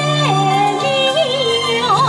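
A woman sings a Hakka mountain song through a microphone and PA over amplified backing music. Her melody slides between notes with vibrato and turns, over a held low accompaniment note.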